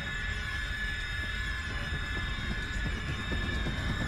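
Eerie horror-film score: a steady, high sustained tone with overtones above a dense low rumble.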